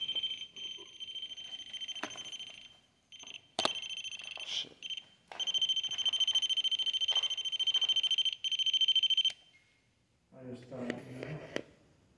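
High-pitched electronic alarm tone from a small device, sounding with a fast pulse for about nine seconds with two short breaks, then cutting off suddenly. Knocks and clicks of handling are heard over it.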